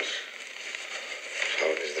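Film soundtrack played through a laptop's small speakers, thin and without bass: a steady hiss for about a second and a half, then a man starts speaking near the end.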